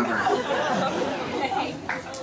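Audience voices talking over one another in reaction, many at once with no single voice standing out, easing off slightly toward the end.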